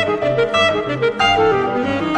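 Alto saxophone and piano playing a quick passage in a fast movement: the saxophone moves through short notes over a piano accompaniment with low repeating bass notes.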